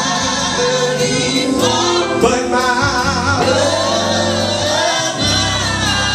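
Live gospel music: a male lead singer on a microphone over a band with drums, cymbals, guitar and keyboard.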